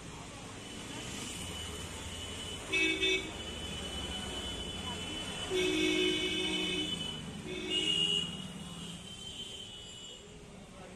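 Vehicle horns honking in street traffic over a low traffic rumble: a quick double toot about three seconds in, a longer held blast around six seconds, and another short honk near eight seconds.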